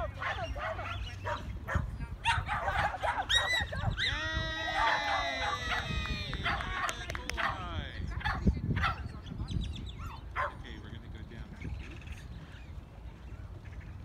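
Dogs barking and yelping, with several calls overlapping in a dense burst about four seconds in that lasts a few seconds, then fading to occasional barks.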